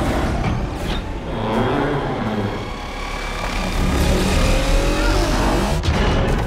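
Film battle sound effects for a giant robot: deep rumbling and mechanical whirring, with rising and falling whines, and a sharp crash just before the end.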